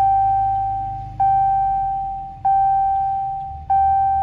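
Dodge Challenger's dashboard warning chime: a single bell-like tone struck four times, about every second and a quarter, each ring fading before the next, over a low steady hum.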